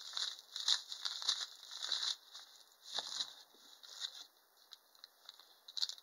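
Clear plastic bags crinkling as hands handle and move them about, in irregular rustles that come thick for about three seconds, then thin out, with one more rustle near the end.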